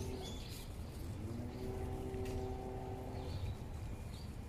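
Short bird chirps over a low, steady rumble, with a steady hum that starts about a second in and stops a little past three seconds.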